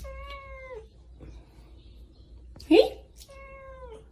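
Angry domestic cat yowling twice. Each time there is a loud, harsh rising call followed by a drawn-out cry that drops in pitch at the end, about two and a half seconds apart.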